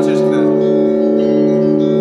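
Russian Orthodox church bells ringing, many overlapping steady tones hanging on together.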